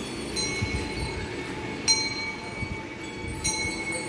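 A metal bell on a walking elephant clanging about every second and a half in time with its stride, three strikes with each one ringing on.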